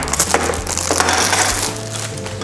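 Clear plastic packaging film crinkling and crackling as it is pulled off a plastic toy part and crumpled up by hand.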